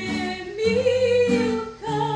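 A woman singing a Serbian old-town song (starogradska) live, accompanied by an acoustic guitar; she holds one long note about halfway through.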